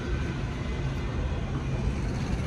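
Steady outdoor background rumble of road traffic, even and without sudden sounds.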